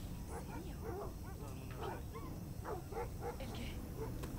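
Dogs yipping and barking faintly in the background, a run of short, repeated high calls over a low steady hum.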